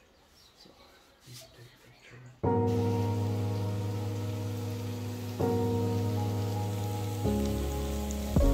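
Near silence, then, about two and a half seconds in, diced zucchini and cured meat begin sizzling in a frying pan. Background music of held chords plays over it, changing chord twice.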